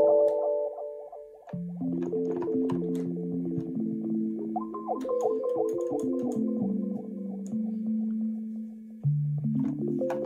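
Yamaha Reface CS synthesizer played live in chords. A held chord dies away in the first second and a half, then new chords follow with a higher note held over them. A low bass note comes in near the end.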